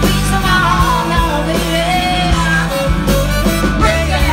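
Live pop-rock band playing with a steady beat, electric guitar and keyboards under a wavering melodic lead line.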